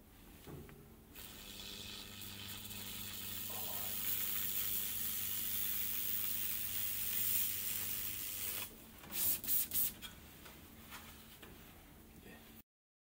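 TIG Brush electrochemical weld cleaner hissing steadily as its fluid-fed brush is run along a TIG weld, over a low hum. The hiss stops about nine seconds in, followed by three short loud bursts.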